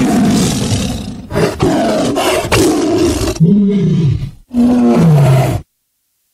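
Loud dramatic sound effect from a pre-recorded mime soundtrack: rough roaring bursts, then two cries that fall in pitch about three and a half and four and a half seconds in, before cutting off suddenly.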